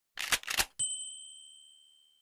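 Logo intro sound effect: a few quick, rasping noise bursts, then a single bright, bell-like ding that rings out and fades over about a second.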